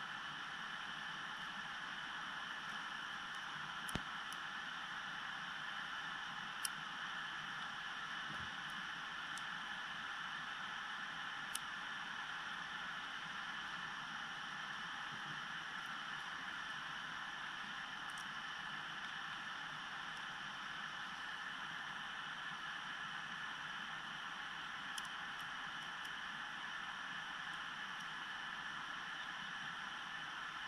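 Lock pick working the pins of a Yale Y90S/45 pin-tumbler padlock: a few faint, widely spaced clicks over a steady hiss.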